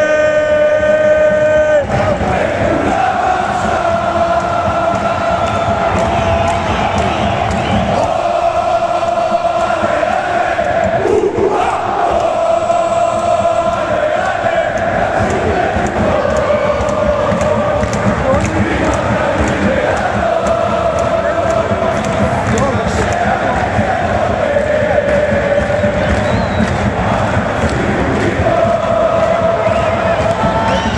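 Large crowd of football fans singing a chant in unison, long held notes in phrases of a few seconds that repeat over and over.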